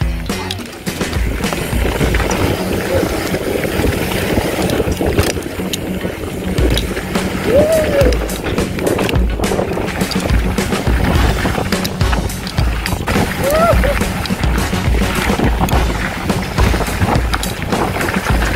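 Wind buffeting the bike-mounted camera's microphone and knobbly tyres rolling fast over a dirt trail on a mountain-bike descent, with frequent clicks and rattles from the bike over the bumps.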